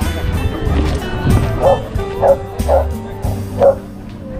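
Background music, with a dog barking four short times in the second half.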